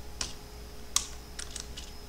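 Computer keyboard typing: a handful of separate keystrokes, the loudest about a second in, over a faint steady hum.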